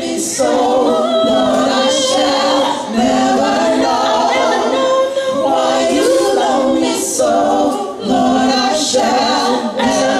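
A gospel praise team, mostly women's voices, singing a cappella in harmony through microphones, with long held notes and vibrato; the instrumental accompaniment has dropped out just as it begins.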